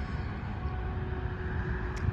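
Steady background road-traffic noise, a low rumble with a faint steady hum.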